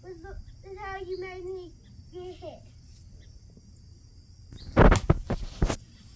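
A child's voice in short, high vocal sounds for the first couple of seconds, then a quiet stretch. Near the end comes a quick cluster of loud thumps and knocks, the loudest sound here.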